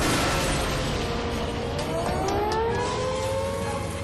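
Film sound effect of a bomb striking a building: a loud, steady rumble of blast and falling debris, with a rising wail over it from about halfway through.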